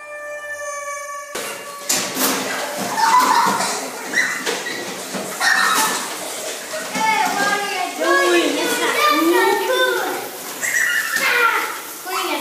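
A held musical note lasts just over a second. Then a group of young children talk, laugh and squeal over one another in a tiled school washroom.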